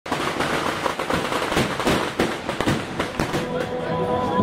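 A rapid, irregular string of firecrackers crackling and banging, some bangs sharper and deeper than the rest, with crowd voices underneath.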